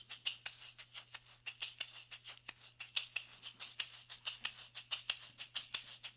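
A hand shaker filled with small metal beads played in the horizontal back-and-forth technique: an even, fast train of crisp rattling strokes. The beads are kept moving level along the shaker rather than dropping, so each stroke sounds about equally strong.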